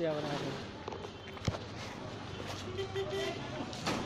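A man talking to the camera over faint street noise, with one sharp click about one and a half seconds in.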